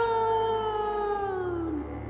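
A long, drawn-out ghostly wail in a voice, one held note that slowly slides down in pitch and fades near the end.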